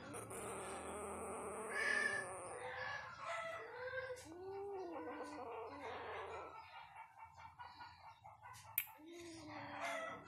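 A few short rising-and-falling animal calls, a cluster about four to five seconds in and another near the end.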